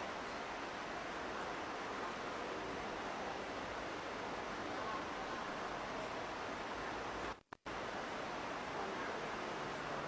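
Steady, even background hiss with no distinct events. It cuts out to silence for a moment about seven and a half seconds in, then returns.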